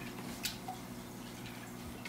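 A single small drip or splash of water in a fish tank about half a second in, faint over a low steady hum.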